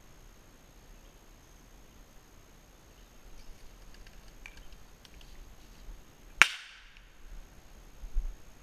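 A single sharp gunshot about six and a half seconds in, with a short ringing tail, of the kind fired over a pointing dog in bird-dog training. Before it, only faint rustling and light steps through brush.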